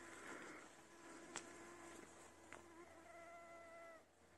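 Near-silent forest ambience: a faint steady hum that gives way to a higher, faint whine about three seconds in, with two faint ticks between.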